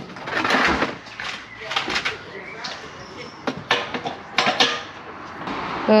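An LPG pump filler nozzle being handled and fitted to a refillable composite gas bottle: a short rush of noise about half a second in, then a few sharp clicks and knocks.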